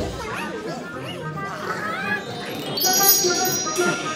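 A group of cartoon voices laughing and chattering together over background music. About three seconds in, high, steady musical tones come in.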